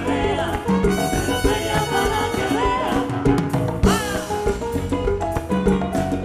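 Live salsa band playing at full volume, with a steady driving percussion beat under held instrumental notes.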